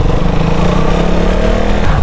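Motorcycle engine running at a steady note while being ridden, heard from the rider's position, over a rushing noise of wind and road.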